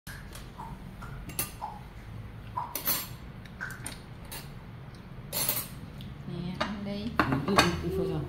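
Tableware clinking during a meal: chopsticks tapping against ceramic bowls in a string of irregular clicks, the loudest about three and five and a half seconds in.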